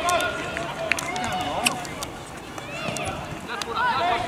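Indistinct voices calling and shouting across a soccer pitch during play, with a few sharp clicks about one and one and a half seconds in.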